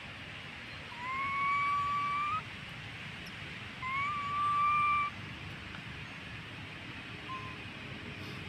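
Baby long-tailed macaque whining: two long, high coo calls, each sliding up briefly and then held on one note for over a second, with a short faint call near the end.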